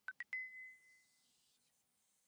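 iOS "Workout Complete" system sound played as a preview: three quick electronic chime notes stepping up in pitch, the last one ringing out for about a second.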